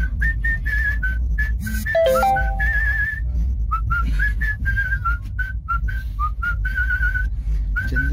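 A man whistling a tune by mouth: a run of short notes that step up and down, with a few longer held notes that waver in a trill, over the steady low rumble of a moving train coach.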